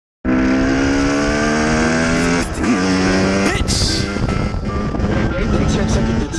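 Dirt bike engine running under way, a steady pitched drone that dips and climbs again about halfway through and then rises sharply as the throttle opens.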